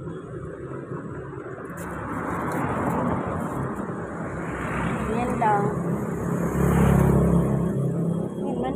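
Motor vehicles passing on a street: a motorcycle goes by in the middle, and a louder engine passes near the end.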